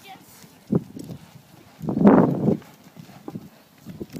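A horse cantering over jumps on a sand arena: soft, muffled hoofbeats with a sharper knock just under a second in. A brief, louder noise comes about two seconds in.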